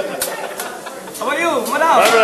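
Voices of diners talking and calling out, coming in about a second in, over a steady hiss of food sizzling on a teppanyaki griddle.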